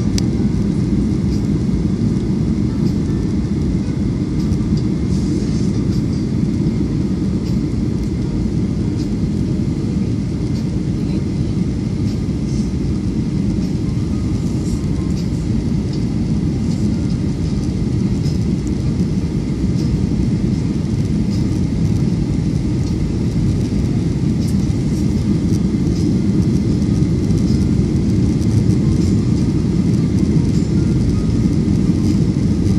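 Steady low rumble of jet engines and rushing air heard from inside an airliner cabin, a Boeing 737 on its landing approach, with a faint steady whine above it. It grows slightly louder in the last few seconds.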